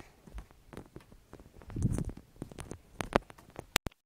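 Handling noise from a phone being moved around: scattered clicks, knocks and rustling, with a low rumbling bump about two seconds in and sharp clicks near the end.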